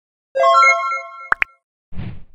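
Subscribe-animation sound effect: a short bright chime followed by two quick rising pops.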